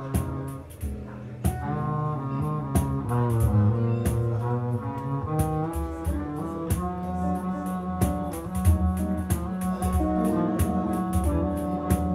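Live jazz ensemble playing: a harmonica carries a melody in long held notes over a bowed double bass, acoustic guitar and the jingles of a pandeiro tapping a regular pulse.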